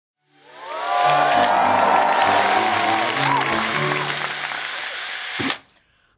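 Cordless drill whirring over music. The drill stops twice and spins up again, and everything cuts off suddenly shortly before the end.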